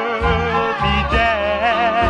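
A 1950s R&B vocal-group record playing: a held, wavering melody line over a bass line that steps from note to note.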